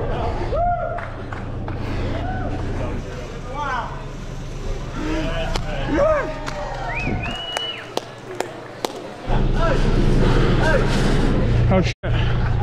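Scattered shouts and whoops from a group of onlookers cheering a climber on, over a steady low rumble that drops out for about two seconds in the second half.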